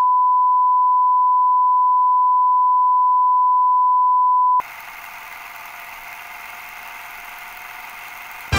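Colour-bar test signal: a loud, steady, single-pitched 1 kHz reference tone that cuts off suddenly about four and a half seconds in, leaving a much fainter steady hiss.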